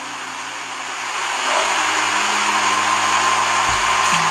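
A steady rushing noise, like blowing air, slowly growing louder, with a faint high hum joining about halfway through.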